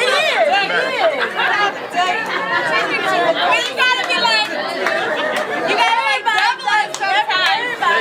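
Several people talking at once: the chatter of a small group.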